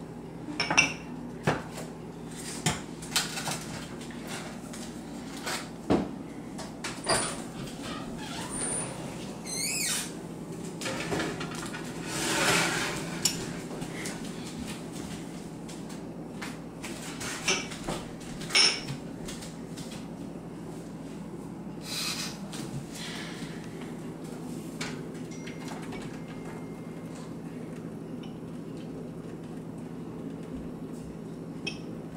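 Ceramic ramekins clinking and knocking against each other and a baking pan as they are set in place and handled, a scatter of separate sharp knocks that thins out in the last third. A steady low hum runs underneath.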